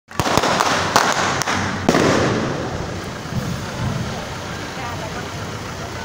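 Firecrackers banging about six times at uneven intervals in the first two seconds, over a crowd's mingled voices, which carry on after the bangs stop.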